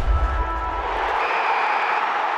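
Logo-card outro sting: a loud whooshing swell over a deep bass rumble. The rumble drops out just over a second in, leaving a steady hiss with faint held tones.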